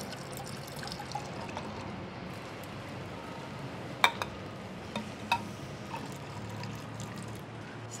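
Whisky poured from a glass bottle into a thermos flask, over a steady low background hum, with a couple of light clinks about four and five seconds in.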